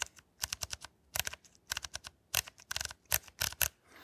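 The mechanical dials, switches and levers of a Fujifilm X100T camera being worked by hand: an irregular run of small, crisp clicks in quick clusters.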